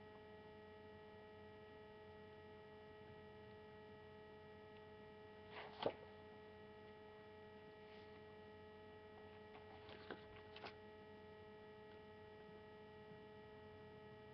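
Near silence with a steady electrical hum made of several thin, even tones. A faint click comes about six seconds in and a few softer ones around ten seconds.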